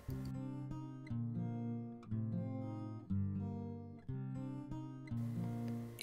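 Background music: acoustic guitar chords, one struck about every second and left to ring out and fade.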